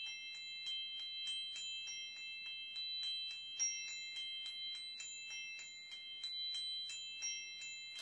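Small singing bowl played by circling a wooden stick around its rim: a steady, high ringing of several tones. Light ticks of the stick against the rim come about four times a second, with brief higher pings.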